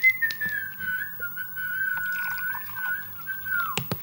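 A person whistling one long, slightly wavering note that drops in pitch and stops just before the end. Underneath, water is poured from a jug into a glass.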